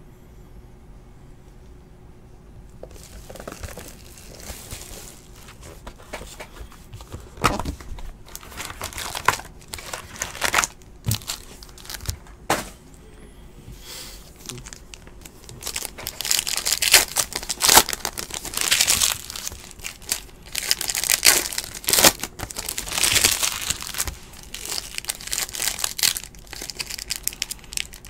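Foil wrapper of a trading card pack crinkling and tearing as it is handled and ripped open. It starts a few seconds in and grows louder and busier about halfway through.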